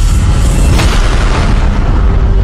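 Cinematic title-sequence sound design: a deep, loud boom rumbling on under dramatic music, with a burst of noise swelling up about three quarters of a second in.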